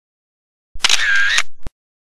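A camera shutter sound effect: one short burst of just under a second, with a sharp click at its end.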